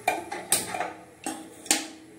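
Four sharp clicks and light knocks at uneven spacing, from handling a pot and stove on a kitchen counter.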